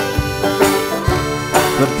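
Banjo picking with accordion chords held underneath and washboard strokes keeping time, in a short instrumental gap of a folk song; a singer comes back in just before the end.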